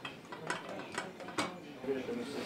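Light clatter at a chip-shop serving counter: four sharp clicks and knocks about half a second apart, as plates of fries are brought out.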